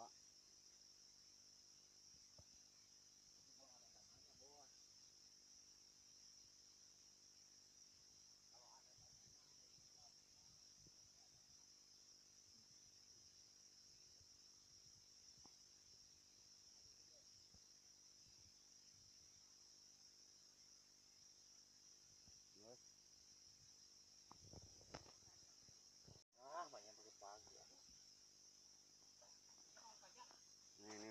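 Near silence apart from a faint, steady high-pitched chorus of insects, with a few faint distant voices and a brief cut-out in the sound late on.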